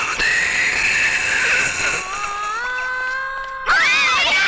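Dramatic film soundtrack: a sustained swell, then a long held note that rises in pitch and levels off. Near the end a sudden loud outcry of several voices screaming breaks in.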